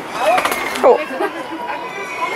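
Mostly voices: a brief exclamation, "oh", over people talking in the background.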